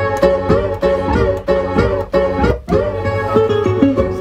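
Live turntable scratching: a held pitched record sample is chopped and bent up and down in pitch in quick rhythmic strokes, several a second, over a low beat. The sound drops out briefly about two and a half seconds in, then comes back.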